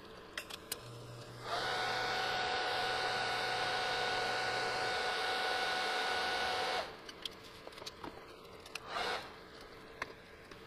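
TIG welding arc burning steadily for about five seconds, a hiss with a steady high whine over it, as a hub is fusion-welded onto a jack shaft. A few light clicks come before the arc strikes, and a short rustle follows near the end.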